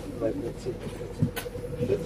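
Indistinct voices inside a MAZ 203 city bus over the bus's steady low hum with a thin constant whine, and one sharp click about one and a half seconds in.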